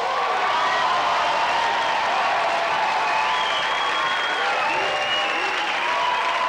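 Studio audience applauding steadily at the end of a song, with voices calling out in the crowd.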